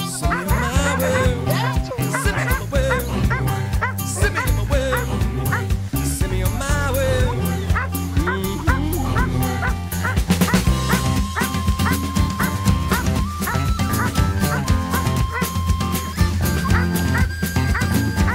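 Background music: an upbeat acoustic rock song with a steady bass beat, a wavy sung line in the first half and long held high notes in the second half.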